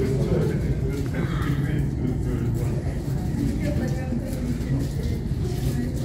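Indistinct chatter of several people over a steady low rumble of airport machinery.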